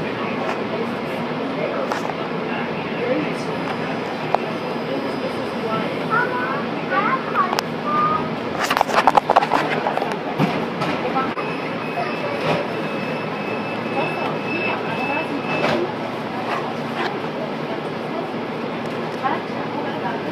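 Steady hum inside a C-Train light-rail car standing at a station, with passengers' voices in the background. A burst of clatter comes about nine seconds in, and a few seconds later a thin high tone holds for about four seconds.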